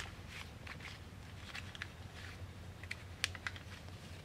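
Foil laminate pouch crinkling faintly as it is slid over a walnut leaf: irregular soft crackles, the sharpest about three seconds in.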